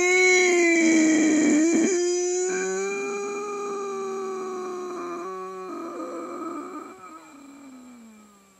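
A long, drawn-out wail by a performer voicing a puppet, held on one pitch for several seconds, slowly fading and sliding down in pitch near the end.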